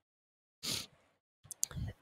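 A short, soft breath, then two quick sharp clicks about a second and a half in, like lip or tongue clicks, just before the voice starts talking again.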